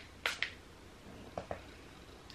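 Two quick spritzes from a fine-mist pump-spray bottle of shimmer body spray, close together about a quarter of a second in, followed by two faint clicks around the middle.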